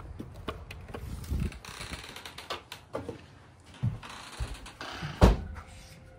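Glass-panelled entrance doors being opened and walked through: a run of clicks and knocks from the latch and handle along with footsteps, and one loud thump about five seconds in.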